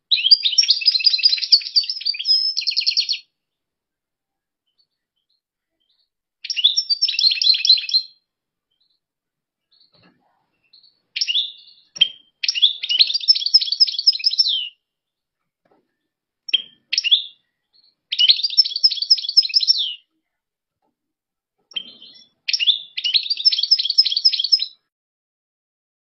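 European goldfinch singing: about five bursts of rapid, high twittering song, each one to three seconds long, with pauses of a few seconds between and a few short single calls in the gaps.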